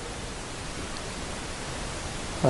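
Steady hiss of room tone and background noise in a large hall, with no distinct sound standing out, in a pause between chanted phrases of a call to prayer.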